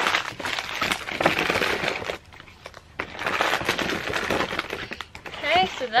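Tissue paper crinkling and rustling as it is stuffed into a paper gift bag, in two spells of about two seconds each with a short pause between.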